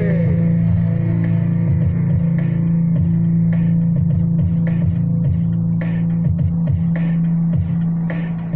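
Instrumental backing track of a pop-rock song with bass, guitar and a drum hit about once a second, playing through an instrumental break. A held sung note ends right at the start.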